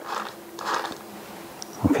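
The hand-squeezed ringer generator of a TA-1/PT sound-powered field phone being worked, its little flywheel generator whirring in two short bursts about half a second apart. It is sending ringing current down the line with no batteries.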